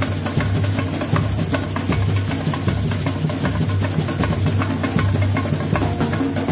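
Samba bateria percussion ensemble playing a fast steady rhythm: the deep beat of surdo bass drums under dense clicking and rattling small hand percussion.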